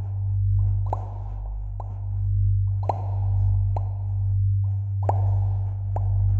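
Short popping sound effects repeating roughly once a second, over a steady low droning hum.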